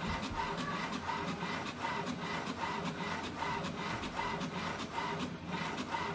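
HP Smart Tank 5000 inkjet printer printing a page: the printhead carriage shuttles back and forth across the paper with a short motor whine that repeats about twice a second, over the steady feed-roller rattle.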